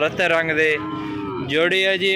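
A young bull mooing: one long, drawn-out call.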